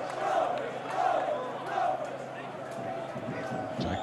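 Football stadium crowd, a mass of voices with a few shouts rising out of it.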